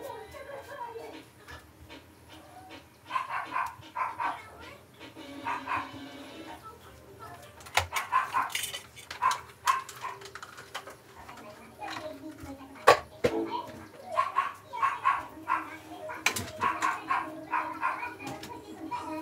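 A dog barking off and on in the background, with a few sharp knocks and clatters of things being moved about.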